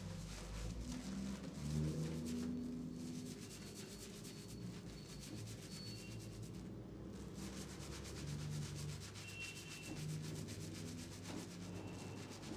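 Fingers scrubbing thick shampoo lather into wet hair and scalp: a continuous scratchy, squishy rubbing made of many quick strokes.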